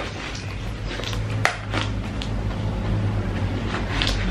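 A taped cardboard parcel being handled, giving a few sharp clicks and rustles, the sharpest about one and a half seconds in, over a steady low hum.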